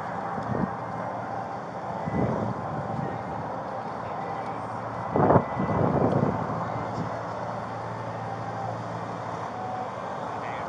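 Street noise on a body-worn camera microphone: a steady hum of vehicles on the road, with louder rustles on the microphone about two seconds in and again about five seconds in.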